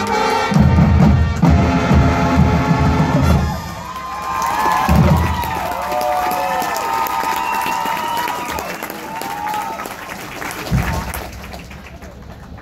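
Marching band playing: full brass over bass drums for the first few seconds, then a softer passage with a low drum hit and rising and falling voice-like whoops, with some crowd cheering.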